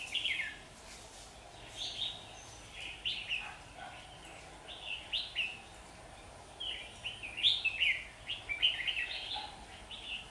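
Red-whiskered bulbuls singing short, bright phrases again and again, thickest in the last few seconds: the challenge singing of a caged decoy bulbul and a wild rival drawn to it.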